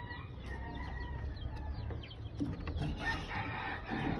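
Rooster crowing faintly in the background: one long call at the start and another about three seconds in.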